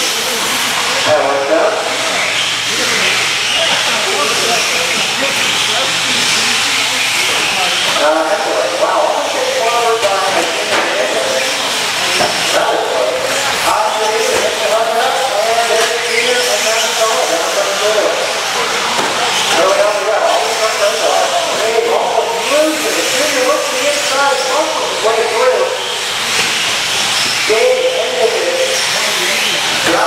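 A pack of 4x4 short-course RC trucks racing on an indoor dirt track: a steady high hiss and whine of their electric motors and tyres on the dirt, with a voice talking over it.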